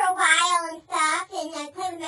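A high-pitched, child-like voice speaking in a sing-song way, in several drawn-out syllables with sliding pitch.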